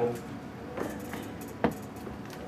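A Bible and papers being handled on a wooden pulpit, close to its microphone: a few soft rustles and taps, with one sharper tap about one and a half seconds in.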